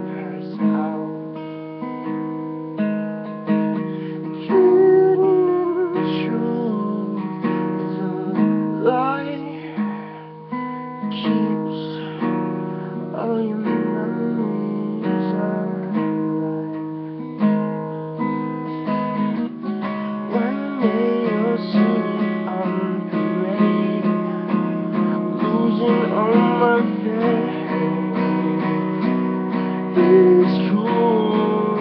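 Acoustic guitar strummed in a steady rhythm, chords ringing between regular strokes.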